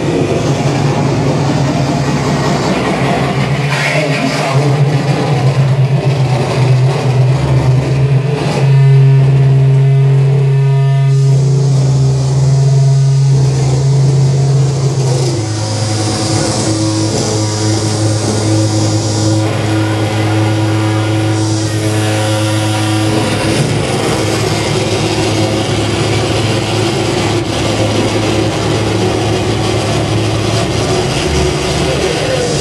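Live harsh noise music from tabletop electronics and effects pedals: a loud, dense wall of noise over a sustained low drone. The texture shifts about a third of the way in and again around the halfway mark.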